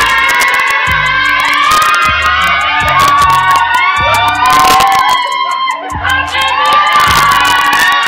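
A crowd of party guests shouting and cheering, with high-pitched screams and whoops, over background music with a pulsing bass beat.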